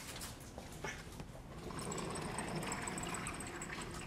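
Vertically sliding classroom blackboard panels being moved, a steady rolling rattle with faint high squeaks over the second half, after a few light knocks.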